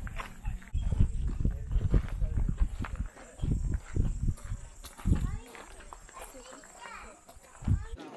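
Footsteps crunching on a gravel path, with wind gusts rumbling on the microphone and faint voices of people nearby. The footsteps and rumble are densest in the first few seconds, then the wind comes in separate gusts.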